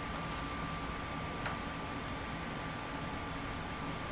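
Steady noise of a room air conditioner running, with a thin steady high tone in it. A single faint tick comes about one and a half seconds in.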